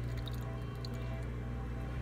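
Leftover water from the last load draining out of an SPT portable dishwasher's sink-adapter hose as the cycle starts, trickling and dripping into a stainless-steel sink. Steady background music plays over it.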